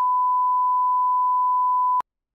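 A censor bleep: one steady, unbroken pure tone that covers a redacted line and cuts off abruptly near the end.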